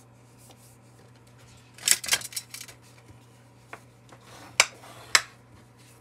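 Paper handling on a craft mat: cardstock and a card base being moved and tapped down, with a rustling cluster of taps about two seconds in and two sharp ticks near the end, over a steady low hum.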